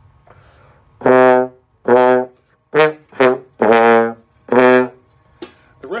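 Trombone played slowly: six separate notes with short gaps between them, the fifth held longest. The phrase runs through slide positions six, six, three, six, one, six, with the long throws out to sixth position that make it the hard part of the passage.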